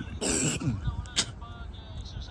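A person clearing their throat once, a short rough burst just after the start, followed about a second in by a single sharp click.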